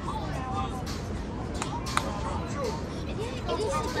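Overlapping chatter and calls from players and spectators over a low, steady city rumble, with one sharp knock about two seconds in.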